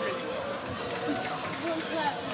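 Indistinct talking from several people, with no music playing.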